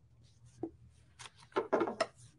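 Quiet handling sounds of a quilted fabric potholder being flipped over and laid flat on a table: a few short rustles and scrapes, the loudest just before the end.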